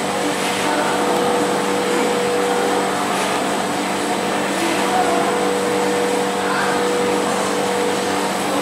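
A machine running steadily, such as a fan: an even whir and hiss with a constant hum that does not change.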